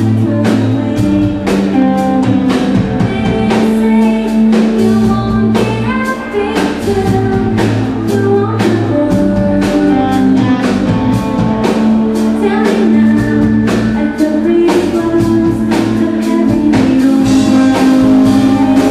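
Live pop-rock band playing with a female lead singer: sung vocal over a steady drum beat and guitar.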